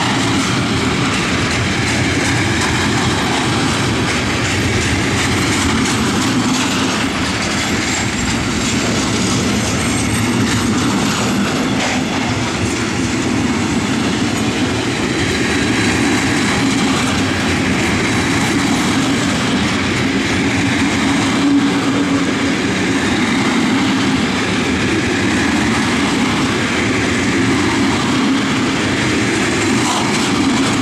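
Freight train of stake flat wagons loaded with pipes rolling past close by: a steady, unbroken noise of steel wheels running on the rails.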